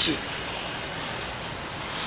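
Insects trilling steadily at a high pitch, a continuous, slightly pulsing buzz with no break.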